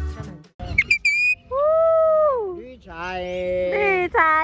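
Accordion music cuts off about half a second in. Then come a few short, very high squeaks and a series of long, drawn-out voice-like calls, each held about a second before its pitch falls away.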